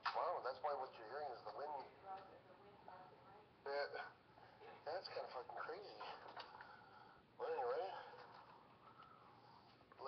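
Indistinct speech: voices talking in short phrases, with no clear words.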